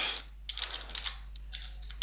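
Computer keyboard being typed on: a quick run of several short key clicks over about a second.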